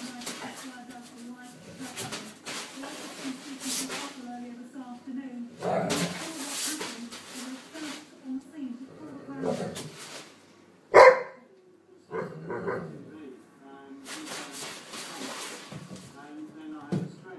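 Weimaraner dogs growling and snarling in rough play over a dog bed, in several rough stretches of a second or more, with one short sharp bark about eleven seconds in. A television voice talks underneath.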